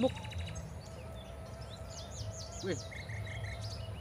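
Small birds chirping: a quick run of high, downward-sweeping notes about two seconds in, then four short, even notes, over a steady low background rumble.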